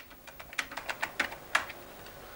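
Computer keyboard being typed on: a quick run of about a dozen key clicks that stops shortly before the end.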